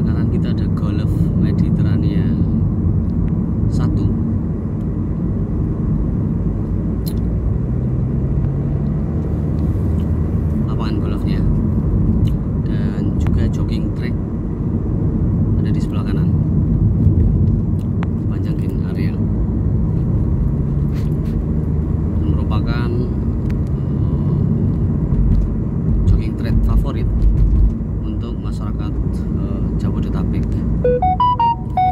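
Steady low road and engine rumble of a moving car, heard from inside its cabin.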